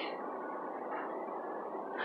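Steady background noise of a grocery store, an even hiss and rumble with no distinct events.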